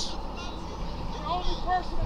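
Road traffic noise from a vehicle passing on the street: a steady low rush of tyre and engine sound.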